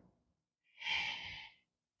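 A woman's single audible breath, a short breathy rush lasting under a second, about a second in.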